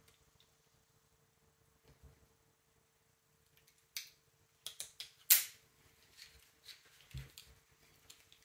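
Climbing hardware (a carabiner and pulley on the rope) clicking and clinking as it is handled. Quiet at first, then a cluster of sharp clicks from about four seconds in, the loudest just past halfway, followed by a few softer clicks.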